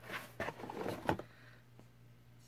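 A cardboard subscription box being handled: a few sharp knocks and a short rustle.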